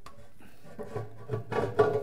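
A mold knocking and scraping against the inside of a steel pressure tank as it is laid down. Light clicks at first, then a cluster of sharp knocks near the end, one with a brief metallic ring.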